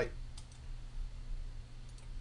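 Two quick computer mouse clicks about half a second in, and another faint click near the end, over a low steady background hum.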